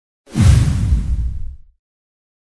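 Logo-intro sound effect: a whoosh with a deep boom that starts suddenly and dies away over about a second and a half.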